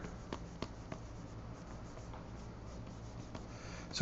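Faint tapping and light scratching of a pen stylus on a Wacom Cintiq pen display, with a few soft clicks in the first second and another near the end. A low steady hum sits under it.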